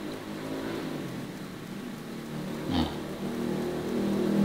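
Steady low hum of an engine running nearby.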